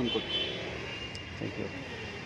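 Outdoor traffic noise, a passing vehicle, under brief fragments of a man's voice between phrases.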